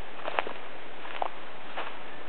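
Footsteps on a leaf-strewn woodland path, three faint steps a little under a second apart, over a steady background hiss.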